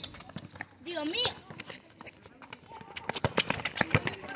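Quick scuffing footsteps of young football players running as play gets under way, with a brief distant shout about a second in.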